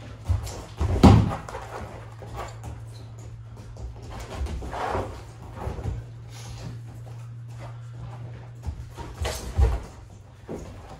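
Wrestlers' feet and bodies thudding and scuffing on a foam wrestling mat during a live takedown drill. The loudest thud comes about a second in, as the shot hits, and more knocks and scuffs follow around five and nine seconds, over a steady low hum.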